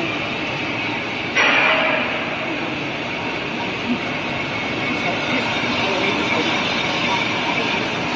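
Steady running noise of a flexo printing machine with its die-cutting unit and conveyor, with a brief louder burst of noise about a second and a half in.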